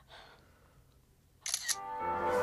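Smartphone camera shutter sound: a sharp double click about a second and a half in. Music with held tones starts right after it.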